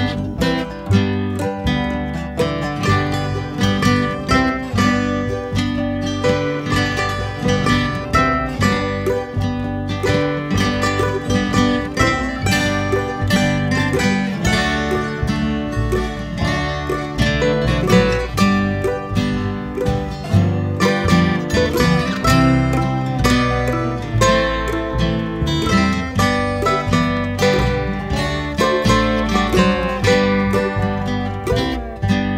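Acoustic string band playing an instrumental break with no singing: strummed acoustic guitar under a quick picked lead line.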